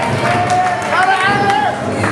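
Live band music in a hall with audience noise: a melody of long, held notes with upward slides carries over a steady low bass tone.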